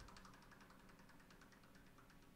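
Very faint, rapid, even ticking of a spinning prize wheel, its pegs clicking past the pointer.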